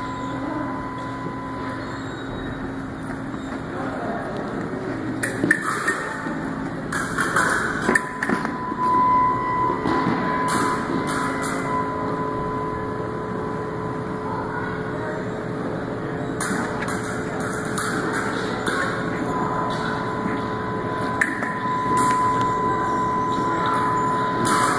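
Foil bout on a metal piste: irregular bursts of footsteps and lunges on the metal strip with sharp knocks of blade contact, over a steady hum and a thin tone that comes and goes.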